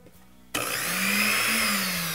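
A 1960s Waring blender switched on about half a second in, its motor running with an empty glass jar, a steady whine that sags slightly in pitch near the end.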